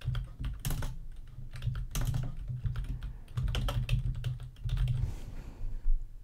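Typing on a computer keyboard: a quick, irregular run of key clicks over dull thuds, with one louder click near the end.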